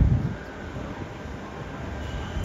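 Low, steady rumble of construction-site machinery heard from a distance, with no distinct knocks or other single events.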